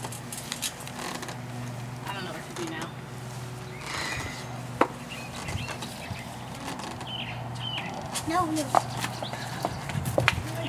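Faint voices and a short laugh over a steady low hum, with a few sharp clicks.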